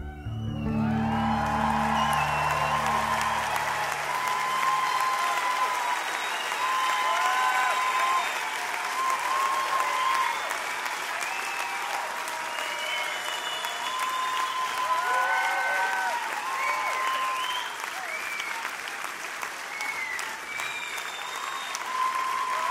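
A large concert crowd applauding, cheering and whistling at the end of a song. The last low chord of the amplified cellos dies away during the first few seconds.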